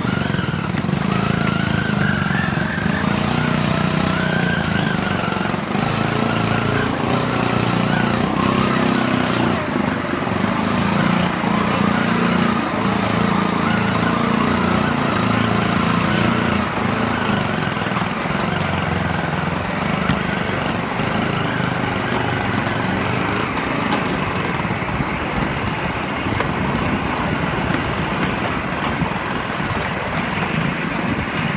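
Small engine of a motorized rail trolley running steadily, with the trolley rattling along the rails and a few sharp clicks.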